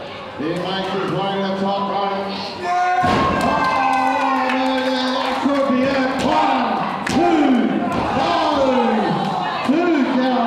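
Wrestler's body landing heavily on the ring canvas off a top-turnbuckle dive about three seconds in, with a loud thud, amid shouting voices. Another sharp smack on the mat comes about four seconds later.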